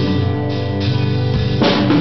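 Live band playing an instrumental passage between sung lines of a rock song: guitars and bass over a drum kit, with a loud drum and cymbal hit late on. Recorded on a mobile phone.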